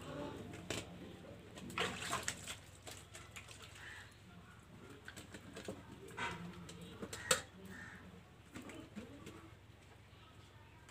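Steel plates and bowls clinking and knocking together as they are washed by hand, in a scattering of short sharp clinks, the sharpest about seven seconds in. Pigeons are cooing in the background.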